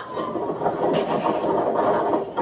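Steady wind noise buffeting a microphone on a slingshot amusement ride, heard from the ride video playing on a TV.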